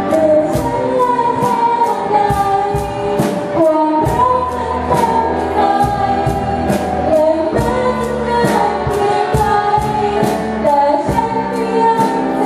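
Live rock band: a girl sings a melody into a microphone over electric guitar, bass guitar and a drum kit keeping a steady beat of about two hits a second.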